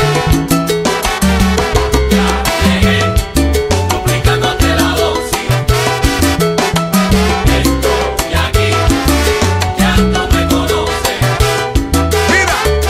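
Timba (Cuban salsa-style dance music) playing an instrumental passage with no vocals: a syncopated bass line under dense, rapid percussion and pitched instrument parts.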